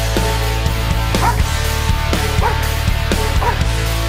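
Police dog barking: three short barks about a second apart, over loud rock music with heavy guitar.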